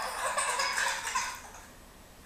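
Toddler laughing, a loud burst that fades out after about a second and a half.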